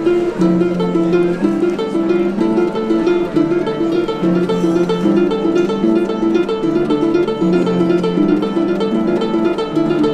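Harp playing an instrumental piece: a fast, even figure of plucked notes repeating over lower notes that change about every second or so.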